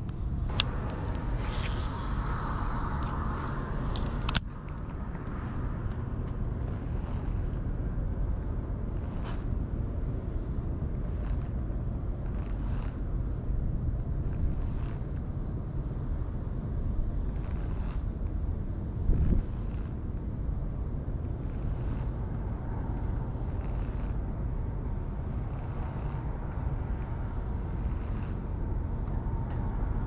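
Steady low outdoor rumble with no speech. A sharp click comes about four seconds in, and faint soft ticks follow roughly once a second after that.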